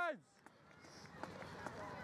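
A shouted cheer of encouragement falls away just after the start, then faint footfalls of a runner on grass tick over a quiet outdoor background.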